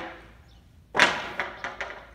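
Sharp knocks and thuds of wood on wood from timber framing: one strong impact about a second in, followed quickly by three lighter knocks.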